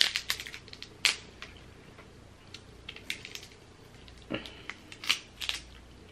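Snow crab leg shells cracking and snapping as they are broken apart by hand. The cracks come one at a time: the loudest at the very start and about a second in, then a cluster a little past four seconds.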